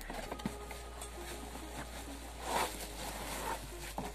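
Rustling and scraping of a cardboard box being cut open and a plastic-wrapped stainless steel kettle being pulled out of it, with a louder rustle about two and a half seconds in.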